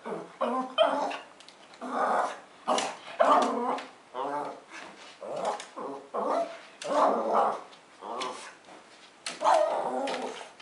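Small pug-mix dog barking over and over, roughly once a second at uneven spacing, with growling mixed in.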